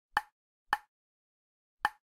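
Three short, identical pop sound effects of an animated title sequence, unevenly spaced, each dying away quickly.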